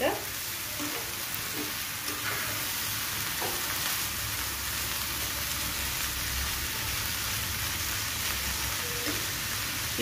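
Bottle gourd greens and stems sizzling steadily as they stir-fry in a non-stick frying pan, turned with a steel spatula.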